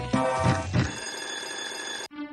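Video slot machine game sounds: several thuds in the first second as the reels stop, then a steady electronic bell-like ringing from about one second in as a line win is counted up.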